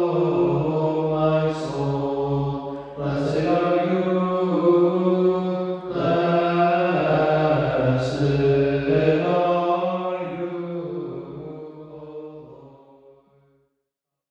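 Byzantine-rite liturgical chant at evening prayer (vespers), sung by a male voice in long sustained phrases with short breaths between them; the chant fades out over the last few seconds.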